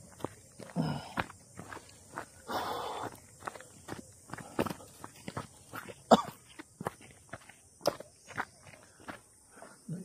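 Footsteps on a gravelly dirt path, an irregular series of short steps. A couple of brief, low voice sounds come in the first three seconds.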